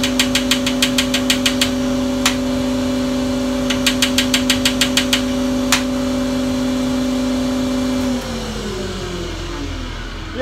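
Holzmann HOB 305 Pro planer running with a steady hum while its loose feed-roller engagement lever rattles against the metal housing, shaken by the machine's vibration, in quick runs of ticks about seven a second. The rattle stops about six seconds in. Near the end the motor is switched off and its hum falls in pitch as it runs down.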